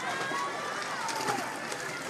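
Poolside crowd at a children's swim race: many overlapping voices cheering and calling out, over a steady wash of splashing from the swimmers.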